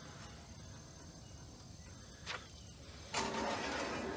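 A single light knock, then near the end a metal water pan being slid out from the bottom of a small Masterbuilt electric smoker, a rasping metal-on-metal scrape.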